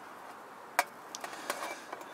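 Plastic spatula knocking and scraping against a Trangia frying pan as it is worked under a pizza: one sharp click about a second in, then a few lighter ticks.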